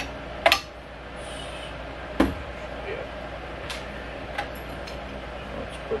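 A few sharp metallic clicks and knocks as the metal row-marker arm is handled and fitted against an Earthway push seeder's frame. The loudest click comes about half a second in, another about two seconds in, and fainter ones follow, over a steady low hum.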